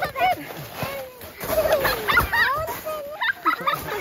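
Several children laughing and calling out in high, overlapping voices.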